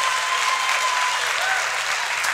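Congregation applauding steadily, with a faint held tone under the clapping.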